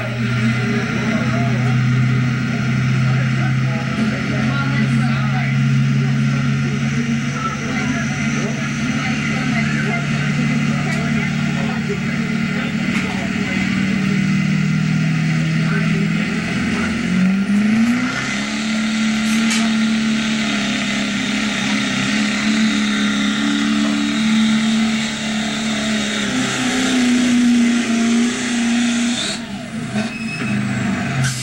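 Engine of an 8500 lb class pulling truck running hard at high rpm, its note climbing sharply about 17 seconds in and then holding at a higher pitch.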